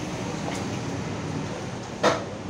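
Steady background noise: a low rumble with hiss, and one faint tap about half a second in.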